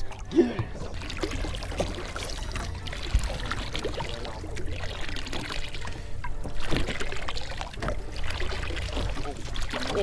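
Small waves lapping and splashing against the hull of a small fishing boat, over a steady low rumble, with a few brief indistinct voices.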